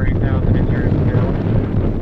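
F4U-4 Corsair's 18-cylinder Pratt & Whitney R-2800 radial engine running with a steady low rumble as the fighter rolls along the runway, with wind buffeting the microphone. Faint voices are heard at the start.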